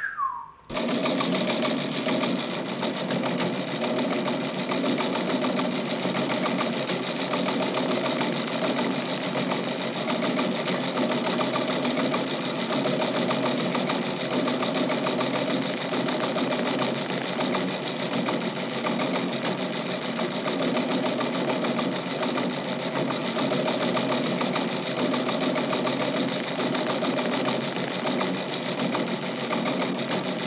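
Teleprinter printing: a fast mechanical rattle that starts abruptly just under a second in and keeps up at a steady level without a break.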